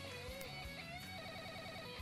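Quiet background music with a guitar carrying a wavering melody, including a quickly repeated note partway through.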